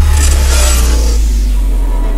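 Intro sound design: a loud, steady deep bass rumble with two swells of whooshing hiss over it, one early on and one near the end.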